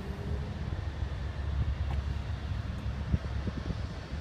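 Wind rumbling on a handheld phone microphone outdoors, with a few faint ticks about three seconds in.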